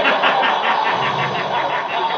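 Loud, drawn-out excited yelling: one long shout with an even rapid pulse running through it, a hype reaction to a punchline.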